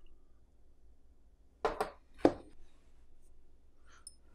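Small hard clicks from handling a glass ink bottle and a fountain pen. Three short, sharp clicks come about a second and a half in, the last the loudest, over faint room tone.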